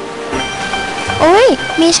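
A woman's surprised exclamation, 'ui!', gliding up and then down in pitch about a second in, starting a line of speech. Under it a steady held chord of background music.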